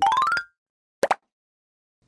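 Edited-in transition sound effects: a quick rising tone lasting about half a second, then one short hit about a second in, with dead silence between them and after.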